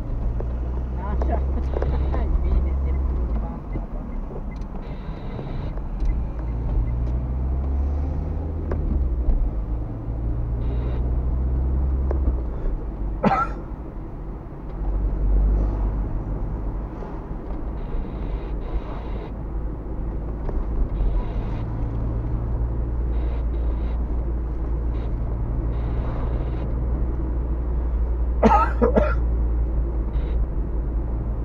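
Car driving, heard from inside the cabin: a steady low engine and road rumble, its hum rising and falling in pitch as the car pulls away and changes speed. Two brief sharp sounds break in, about 13 seconds in and near the end.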